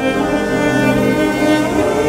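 Background music: a bowed-string passage with long held notes.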